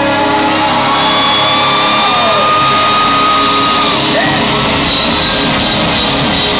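Live rock band, with electric guitars and drum kit, playing out the end of a song in a club, loud and steady, while the crowd cheers, shouts and whoops over it.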